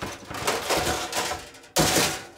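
Metal half sheet trays clattering and scraping against each other as one is pulled out of a stack in a drawer, ending in a loud bang of metal on metal near the end.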